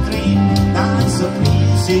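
Live band playing: acoustic guitars and keyboard over a bass line with a steady beat.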